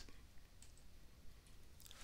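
Near silence with a few faint clicks as a stiff cardboard board-book page is turned.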